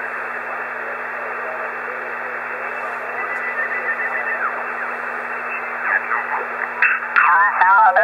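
Steady band-limited static hiss from a homebrew HF amateur receiver listening on single-sideband, with faint sliding tones drifting through as the tuning knob is turned. A station's voice comes in near the end.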